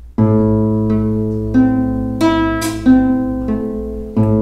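Classical guitar fingerpicked slowly on an A minor chord: an open fifth-string bass note, then single plucked notes on the third, second, first, second and third strings, six notes in all, evenly spaced and left ringing.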